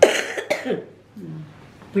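A woman coughing twice in quick succession, about half a second apart, followed by a brief bit of voice.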